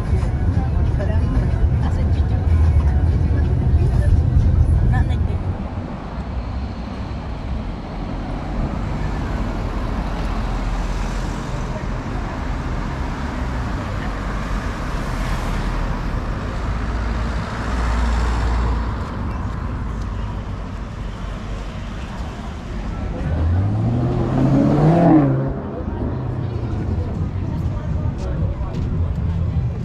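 Road traffic: a low rumble for the first few seconds, then cars driving past one after another. About 24 seconds in, a vehicle engine revs up with a rising pitch and then drops away.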